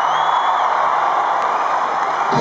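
Large arena crowd cheering and screaming, with a shrill high note rising briefly near the start and a single click about halfway through.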